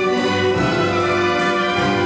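Full symphony orchestra playing, bowed strings with brass, in sustained chords that move from one to the next.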